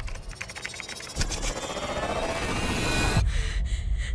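Computer keyboard typing, a quick run of clicks, for about a second. Then a hit and a horror-trailer swell of noise and music rising steadily for about two seconds before it cuts off sharply.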